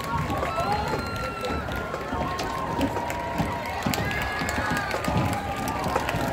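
Football stadium crowd talking and calling out all at once, with scattered claps.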